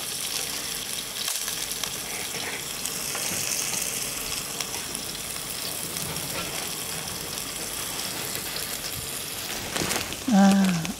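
Food frying in hot oil in a pan over a gas flame: a steady sizzle.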